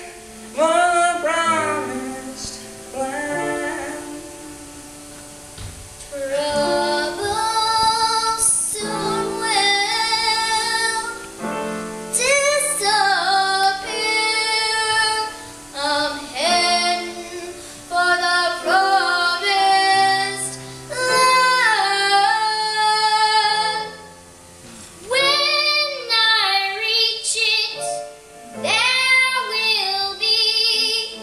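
Young choir soloists taking turns singing solo lines into a microphone, phrase after phrase with short breaths between, over sustained lower accompanying notes from a piano.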